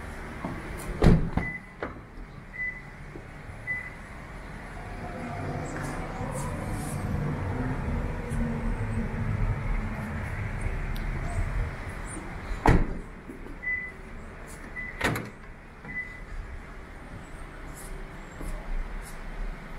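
Doors of a 2015 Lexus ES350 sedan being shut with solid thuds: two loud ones, about a second in and about two-thirds of the way through, each followed by a smaller knock. Between them a faint short high beep repeats about once a second, with low rumbling handling noise.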